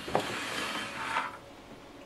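Rubbing, rustling handling noise as a hand moves over the metal amplifier chassis on the workbench, lasting about a second before it dies down.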